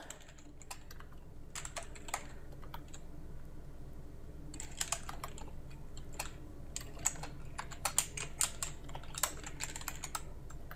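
Computer keyboard typing in short bursts of keystrokes, with a pause of about a second and a half a few seconds in.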